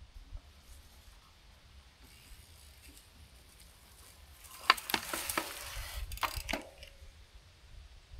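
Mountain bike rolling up a dirt path and braking to a stop: tyre noise on the dirt with several sharp clicks and knocks from the bike, loudest about five seconds in, over a low wind rumble on the microphone.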